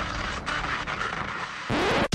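Steady rushing noise, with a rising sweep starting near the end.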